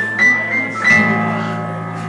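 Acoustic guitar and electronic keyboard playing an instrumental lead-in: held notes over a steady low bass note, with a new chord struck about a second in.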